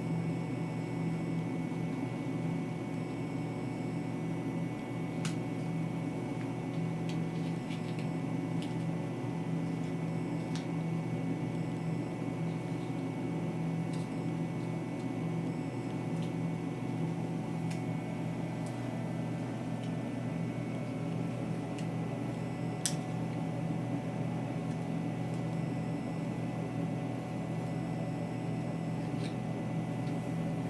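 A steady low machine hum with a faint high tone over it, like a fan or appliance running in a small room. A few faint clicks stand out here and there, as small scissors snip through the leathery shell of a ball python egg.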